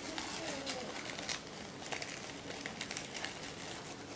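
Quiet handling noise: light rustles and small clicks of packaging and small items being moved about, with a brief faint murmured voice about half a second in.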